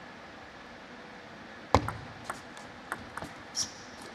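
Table tennis ball being played in a short rally: a sharp, loud crack of the serve about two seconds in, then a few lighter clicks of ball on racket and table, the last with a short high squeak.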